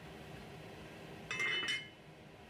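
Lid put onto a stovetop cooking pot: a single sharp clink about one and a half seconds in that rings briefly.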